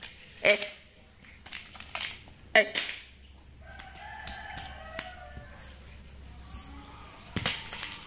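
An insect chirping steadily, about three short high chirps a second, with a few sharp knocks over it.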